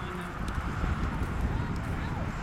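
A Newfoundland pony walking on the dirt footing of a show arena, its hoofbeats mixed with voices and a steady low rumble in the background.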